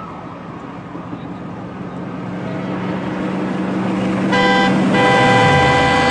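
Opening of a eurodance track: a swelling synthesized noise build over a held low synth note, growing louder, with a bright sustained synth chord coming in about four seconds in.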